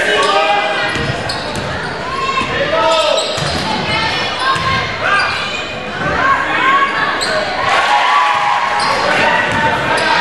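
Basketball dribbling on a gym's hardwood floor, with players and spectators calling out throughout, in a large echoing gymnasium.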